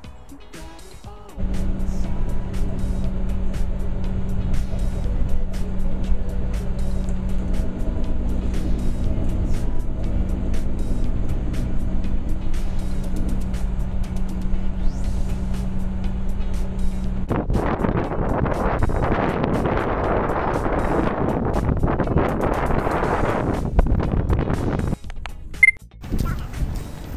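Inside a moving bus or coach: a steady low engine drone and road rumble with a constant hum. About 17 seconds in it changes to a louder, rougher rushing noise.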